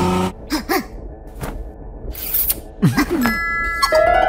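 Cartoon sound effects in a pause of the score: a few sharp clicks and two short, wordless vocal sounds that wobble in pitch, then a bright bell-like ding ringing for about half a second near the end.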